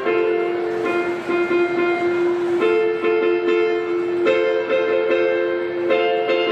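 Portable electronic keyboard played solo: a slow melody over held notes, the harmony shifting a few times.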